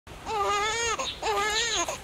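An infant crying: two long, wavering wails, each well under a second, with a short catch of breath between them.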